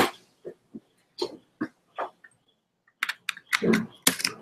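Handling noise close to the microphone: a string of short clicks and knocks as a webcam and its USB cable are handled, with a denser cluster and a louder knock near the end.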